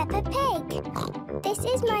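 A cartoon pig character's snorting oink and a child's voice over light children's theme music.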